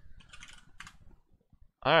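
A few soft keystrokes on a computer keyboard in the first second, typing a short word and pressing Enter.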